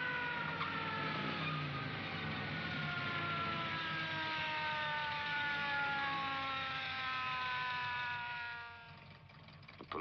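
A car engine running at speed over road and wind noise, its note sinking slowly and steadily for about eight seconds before it fades out near the end.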